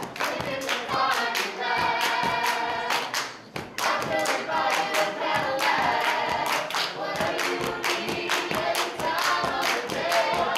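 A group of women singing together through a microphone, with rhythmic hand-clapping in time with the song.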